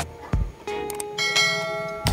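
Subscribe-button sound effect: a click, then a bell chime that starts about a second in and rings on with many high overtones.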